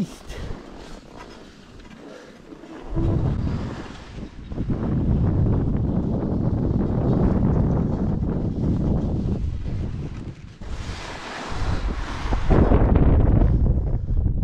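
Wind buffeting the microphone of a skier's helmet or body camera while skiing downhill, starting about three seconds in, with the hiss of skis scraping through snow, loudest near the end.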